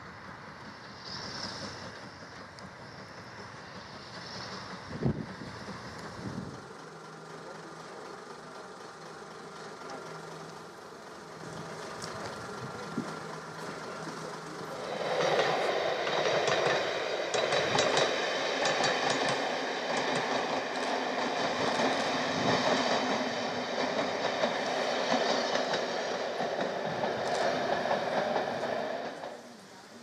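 First-generation diesel multiple unit running on the rails. At first it is a fainter rumble with a single knock about five seconds in. From about halfway it is much louder and steadier: the underfloor diesel engines and transmission giving a steady many-toned whine over the rumble, heard as if from on board, until it drops away just before the end.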